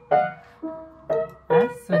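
Piano notes played one after another, about two a second, in a bouncing pattern meant to sound like a horse galloping.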